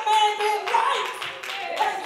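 Hand clapping in a church, going on under a woman's voice amplified through a handheld microphone.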